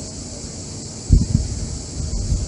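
A pause in speech with a steady hiss, broken by two brief low thumps on the microphone about a second in.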